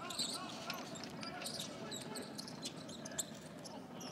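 Basketball game court sound: a ball bouncing on the hardwood floor during play, under faint shouts and chatter from players and the small crowd.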